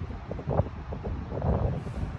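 Wind buffeting the microphone: an uneven, gusty low rumble, with a couple of faint knocks.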